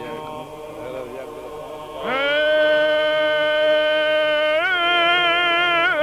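Byzantine chant: over a quiet, steady low drone (the ison), a solo male chanter enters about two seconds in, scooping up into one long held melismatic note with small ornamental turns near the end.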